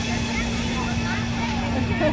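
Outdoor crowd of spectators chattering in the distance, over a steady low hum and a constant background noise.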